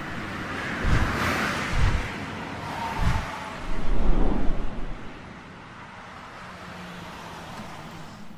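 Intro sound effects: rushing whooshes with deep booming hits about a second apart and a low rumble a few seconds in, settling to a quieter steady rush for the last few seconds.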